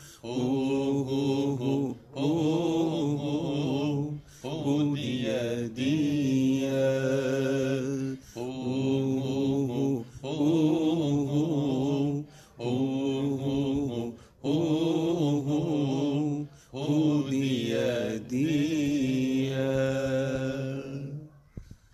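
A man chanting a Turkish Sufi hymn (ilahi), drawing out long vowels in repeated phrases of about two seconds, with short breath pauses between them.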